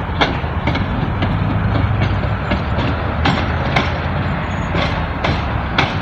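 Tram rolling through a track junction and curve: a steady low rumble with the wheels clacking over rail joints and points, about two or three sharp clicks a second, unevenly spaced.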